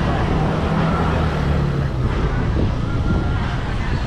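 Busy street ambience: a motor vehicle running close by, its engine hum fading out about two seconds in, over a constant low rumble of traffic and wind buffeting the microphone.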